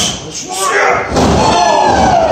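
A wrestler's body slammed down onto the wrestling ring mat with a heavy thud as a lifting move is finished, while people's voices shout over it.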